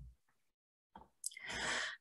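A woman's audible in-breath into a close microphone, lasting under a second near the end, taken just before she speaks again.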